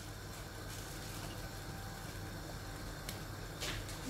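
Faint, steady kitchen background with a low hum, with a pan of tomato sauce simmering on the gas hob. A faint click about three seconds in.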